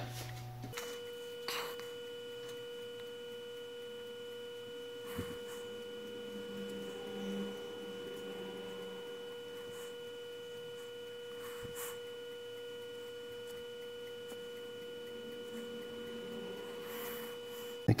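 Faint, steady electrical hum holding one pitch with a few higher overtones, and a few soft faint taps scattered through it.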